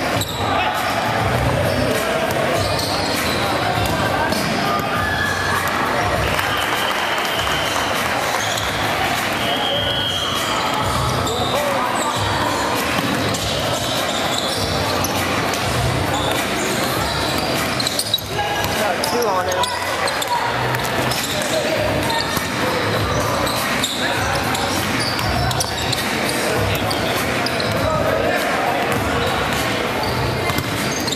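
Basketballs bouncing on a hardwood gym floor during a game, with players' voices ringing in the large gymnasium.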